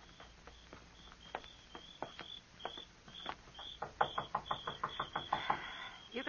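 A radio-drama sound effect: a run of sharp taps or clicks, sparse and faint at first, then faster and louder over the last two seconds.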